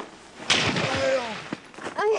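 A sudden loud thump about half a second in, with a short rush of noise after it, then a brief wordless sound from a person's voice.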